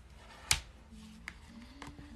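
Tarot cards being handled: one sharp snap about half a second in, then a few lighter clicks as a second card is brought up beside the first.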